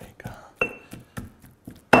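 Stone pestle pounding and mashing avocado in a stone molcajete, a quick run of knocks about four a second. A couple of the strikes hit stone on stone with a short ringing clink, the loudest near the end.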